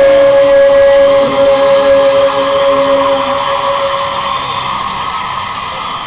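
Live rock band ending a song, heard through a television's speaker: one long held note that fades out over about four seconds.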